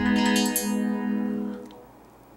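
Korg Kronos synthesizer's guitar sound: a plucked note ringing out through a multiband modulation delay effect, fading away near the end. The effect is a little heavy.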